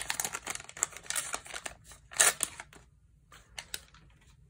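Crinkling and tearing of a 1990 Fleer basketball pack's wax-paper wrapper as it is pulled open by hand, with a louder rustle about two seconds in; after that it goes quiet apart from a few light ticks.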